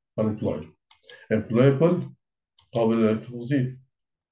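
A man speaking in short repeated phrases, with a sharp computer mouse click about a second in.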